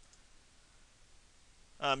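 Near silence: faint room tone, ending in a man's short 'um' near the end.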